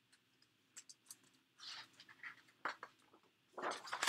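Pages of a large hardcover picture book being handled and turned: a few faint clicks, then short soft paper rustles, the loudest near the end as the page comes over.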